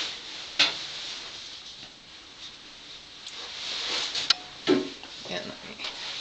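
Handling noise from a handheld pH meter and its cup of water: two sharp clicks, one about half a second in and one about four seconds in, with low rubbing in between.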